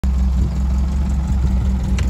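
1951 MG TD's four-cylinder engine idling steadily.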